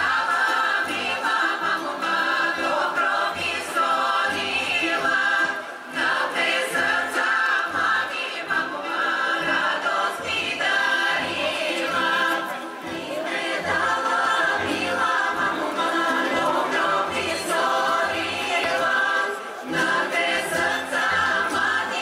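Women's folk choir singing a Bulgarian folk song in full harmony, with a band and a regular bass line underneath. The voices sing in long held phrases of about six to seven seconds, each ending in a short break for breath.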